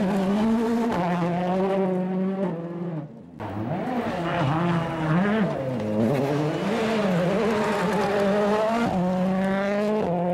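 Ford Fiesta RS WRC rally car's turbocharged four-cylinder engine running at high revs. The pitch holds steady, then rises and falls as the throttle comes on and off. The sound drops out briefly about three seconds in, then comes back.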